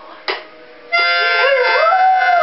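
Portuguese Podengo howling: a wavering howl rises in pitch from a little over a second in. It sounds over loud music of sustained, chord-like notes that begins just before it.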